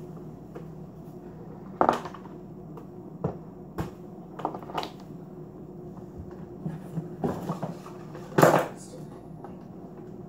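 Kitchen clatter as a glass blender jar and other things are handled and set down on the counter: a string of knocks and clunks, the loudest about two seconds in and near the end, over a steady low hum.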